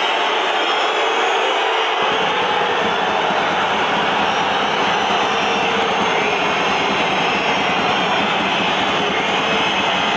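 A large football crowd in a packed stadium stand: a steady, dense roar of many voices, with a deeper rumble joining about two seconds in.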